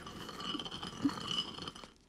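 Stone hand mill being turned, a quiet, scratchy grinding of stone on stone, dying away near the end.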